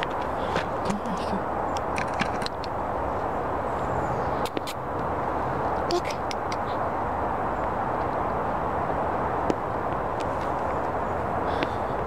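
Husky puppy chewing and gnawing on something on the ground, heard as scattered small clicks and crunches over a steady outdoor background rush.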